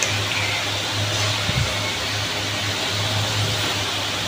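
A steady low machine hum with an even hiss of air, like a running fan or motor, with a soft bump about a second and a half in.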